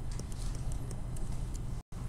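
Plastic stylus tip tapping and ticking on a tablet screen while handwriting, a scatter of short sharp clicks over a steady low hum. The sound cuts out for an instant near the end.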